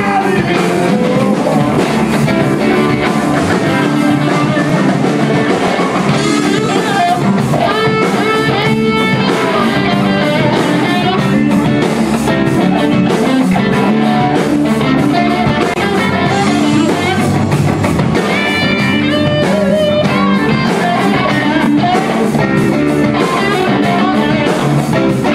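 Rock band playing: electric guitars over a drum kit, with some singing.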